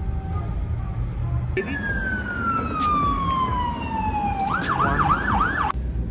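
Emergency vehicle siren: one long falling wail from about a second and a half in, switching near the end to a quick up-and-down yelp of about four cycles a second that cuts off suddenly, over steady low car road rumble.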